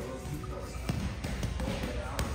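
Boxing gloves thudding against a Fairtex heavy punching bag, with a couple of sharp hits about a second in, in a large echoing gym.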